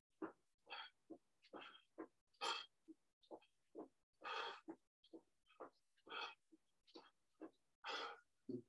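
A man's faint, heavy breathing from the effort of holding a plank: short separate puffs, about two a second, each cut off to silence in between.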